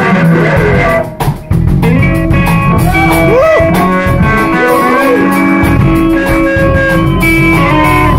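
Live blues-rock band playing: lead electric guitar over drums, with guitar notes bending up and down around the middle. The band cuts out briefly about a second in, then comes straight back.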